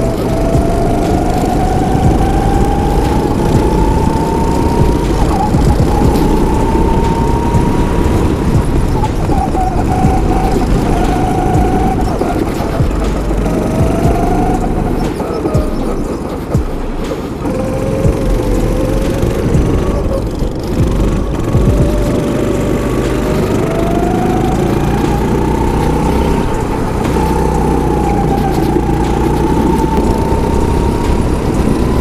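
Go-kart engine running at speed, its pitch climbing for several seconds and falling back again and again as the kart accelerates and slows through corners, under a heavy low rumble of wind and vibration on the onboard camera.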